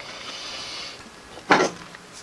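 Tools and leather being handled on a workbench: a soft sliding rustle, then a short, louder knock or scrape about one and a half seconds in.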